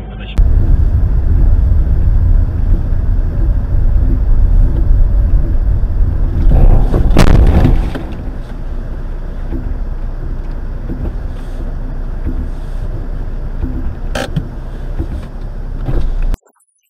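Heavy low rumble of a vehicle in snow, with a brief loud burst about seven seconds in, then a quieter steady rumble and a sharp click near the end.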